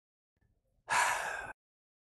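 A person's short, breathy exhale into the microphone, about half a second long, roughly a second in.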